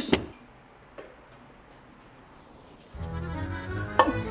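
A sharp clack as the trap's push-pull solenoid fires its plunger to punch the toy rat off the platform, followed by a light click about a second later. From about three seconds in, background music starts.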